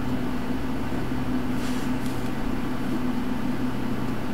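Steady low electrical hum with a fan-like rush from the running radio bench equipment (repeater, its power supply and the Com 3 service monitor) while the repeater transmits into the test set.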